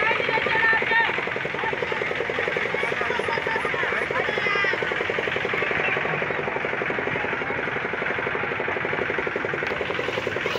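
An engine running with a rapid, even putter, under the voices and shouts of a crowd.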